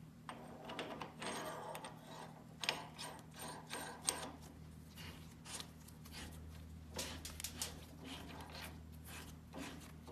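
Steel split nut being handled and threaded by hand onto a machine spindle: light, irregular metallic clicks and scraping, with two sharper clinks about three and four seconds in and a few more later.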